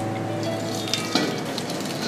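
Maple syrup evaporator boiling with a steady sizzle and low hum while the draw-off valve is opened and hot syrup starts running into a stainless steel bucket, with one short knock about a second in.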